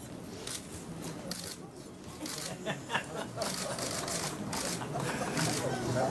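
Low chatter of a roomful of people, with repeated quick shutter clicks from DSLR cameras, several a second at times.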